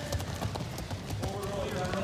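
Many small feet thudding on a foam wrestling mat as a group of children run laps, a quick uneven patter, with children's voices calling out over it from the second half.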